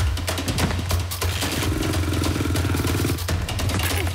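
Fast action background music, with a cartoon motorcycle engine buzzing for about a second and a half in the middle.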